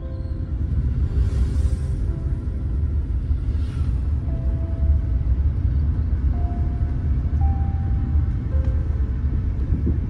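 Steady low rumble of a car driving, heard inside the cabin, with soft music playing over it.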